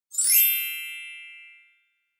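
A bright, shimmering chime sound effect: one sparkling ding that rings and fades away over about a second and a half.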